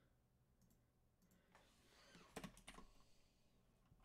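Faint computer keyboard typing: a few scattered keystrokes, then a quick run of several louder clicks a little past halfway.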